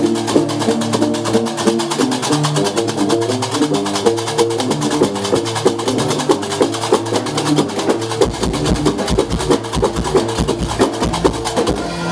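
Live Gnawa music with no singing: a guembri (three-string bass lute) plays a repeating stepped riff over a fast, steady clatter of qraqeb (iron castanets). Deeper thuds join about eight seconds in.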